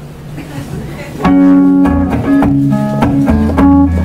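Electric guitar coming in about a second in with a picked song intro: ringing chords whose notes change every third of a second or so.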